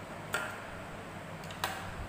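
Scissors snipping paper: two sharp clicks about a second and a quarter apart.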